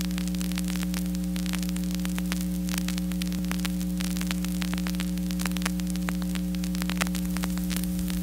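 Surface crackle and scattered pops from a 7-inch vinyl single as the stylus runs in the lead-in groove before the music, over a steady electrical hum from the playback chain.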